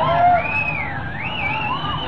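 Electric guitar feedback on a live rock stage: a high squealing tone that swoops down in pitch and back up, over the band's dense, distorted playing.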